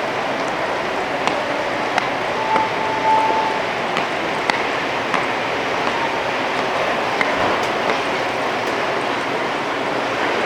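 Steady rushing background noise, with a few faint clicks and a brief steady beep about two and a half seconds in.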